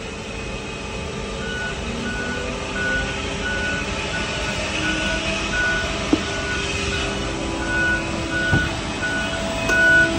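Evenly repeating high warning beeps, a bit under two a second, starting about a second and a half in, from a cargo loader's alarm. Under them runs a steady mechanical hum from the cargo-loading equipment, with a couple of sharp clicks.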